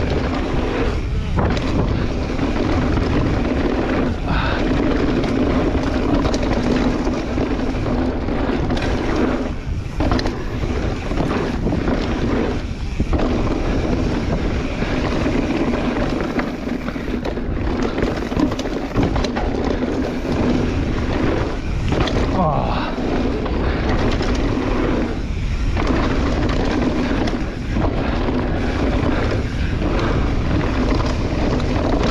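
Wind rushing over the microphone and tyre roar from a downhill mountain bike riding fast down a dirt track, a steady loud noise with brief dips.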